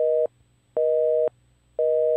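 Telephone busy signal: a steady two-note tone beeping about once a second, half a second on and half a second off.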